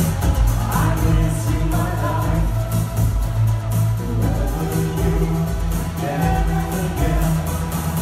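Live synth-pop band music: keyboards over a steady electronic drum beat and heavy bass, with two singers' vocal lines coming in and out.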